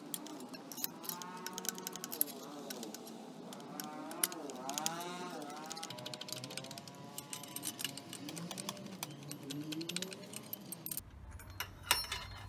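Quiet background music with soft, gliding melodic lines. Under it are scattered faint clicks, likely from the exhaust pipe and its fittings being handled.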